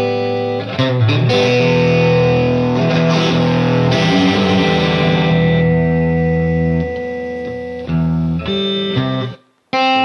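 Electric guitar played through a Headrush pedalboard's heavy distorted preset: chords struck and left to ring, fading a few seconds in before another chord. Near the end the sound is cut off sharply and a new chord is struck.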